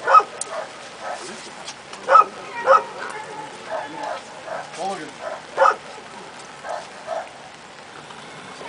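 A dog barking, four short barks: one at the start, two close together about two seconds in, and one more past halfway. Quieter voices talk in between.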